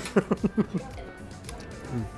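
A man laughing for about the first second, then background music.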